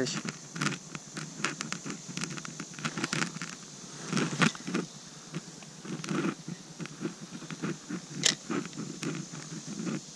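Irregular clicks, taps and scrapes as hands work a fishing rod and spinning reel close to a chest-mounted camera, over a steady high-pitched hiss.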